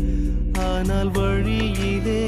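Tamil Christian devotional song: a solo voice singing a wavering, ornamented melody over instrumental backing with percussion.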